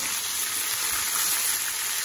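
Marinated chicken pieces sizzling steadily in hot oil in a kadai, fried part-way, to about 75 percent done.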